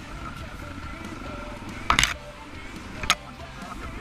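Dual-sport motorcycle engine running steadily at low trail speed, with two sharp knocks about two and three seconds in as the bike hits bumps on the rough trail.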